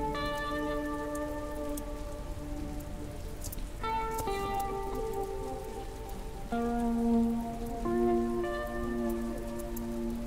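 Slow ambient music: sustained, gently fading chords, with new chords coming in about four, six and a half and eight seconds in. Beneath them runs a steady hiss with scattered faint crackles.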